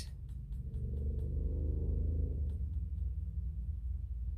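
Low steady rumble of room noise, with a few faint light ticks of a paintbrush against a ceramic palette as paint is picked up.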